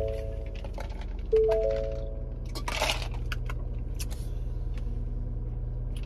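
Steady low hum of a car's idling engine heard from inside the cabin, with a few held musical tones near the start and a short rustle about three seconds in.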